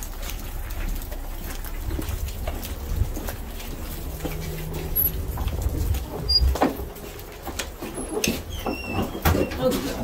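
Footsteps and the handling of a door as a person walks in from outside, over a steady low rumble on the microphone that drops away after about six and a half seconds, with a couple of sharp knocks and a few faint high squeaks near the end.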